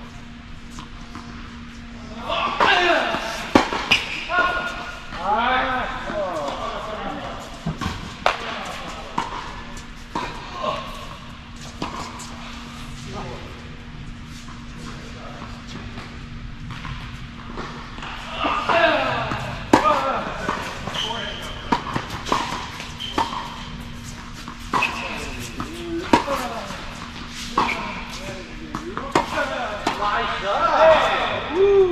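Tennis balls struck by racquets and bouncing on an indoor hard court: short, sharp knocks that echo in a large hall, among people's voices. A steady low hum runs underneath.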